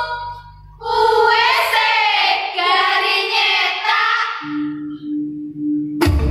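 A high voice singing a wavering vocal line of Javanese dance music, ending about four seconds in. A steady held tone follows, and full music with percussion comes in at the very end.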